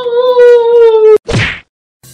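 A man's long drawn-out "wow", held on one pitch and sagging slightly, cut off about a second in by a sharp click and a short whoosh.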